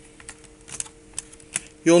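A few light, irregular clicks and taps from a Dell Inspiron 1440 laptop keyboard being handled and fitted into place, over a faint steady hum.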